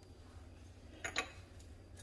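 Quiet room tone with a steady low hum, broken by one brief faint click about a second in.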